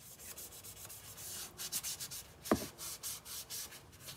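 Sandpaper rubbed over a costume armor piece in quick, uneven strokes, with a single sharp knock about two and a half seconds in.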